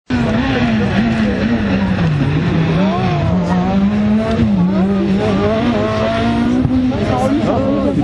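Rally car engine working hard through a chicane, its note dropping and rising again several times as the driver brakes, changes gear and accelerates past close by.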